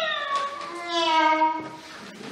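Operatic soprano singing a mock cat's 'miau': one long sung meow that slides down in pitch and fades away.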